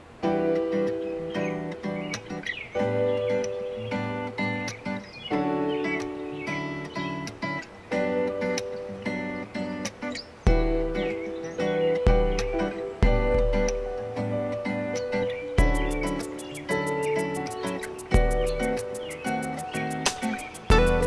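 Chords played on an electronic keyboard along with a backing track, a run at speed through a progression with D major seven and G major seven chords. Deep bass hits come in about halfway, and a fast, even ticking pattern joins near the end. The diminished chord in the progression is not played right.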